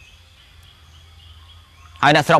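Faint background noise in a pause between speech: a steady low hum with a few faint, thin, high-pitched chirps.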